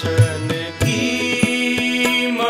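Harmoniums holding a sustained melody over tabla: sharp strokes on the dayan, and low bayan strokes that bend in pitch. This is an instrumental passage of Sikh shabad kirtan.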